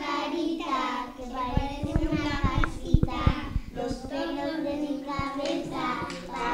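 A group of young children chanting a rhyme together in a sing-song voice. A few sharp taps come in the middle.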